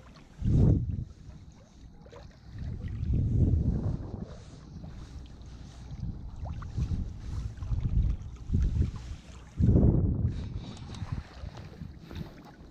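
Wind buffeting the microphone in irregular low gusts, the strongest about half a second in and again near ten seconds.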